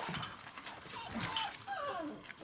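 A young Labrador retriever puppy gives a short, high, falling whimper near the end, over a few light clicks and clinks of plastic toys being knocked.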